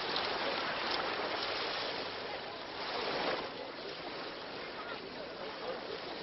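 Steady rushing water, swelling slightly about three seconds in.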